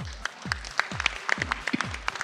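Applause with scattered sharp hand claps over background music with a steady electronic beat.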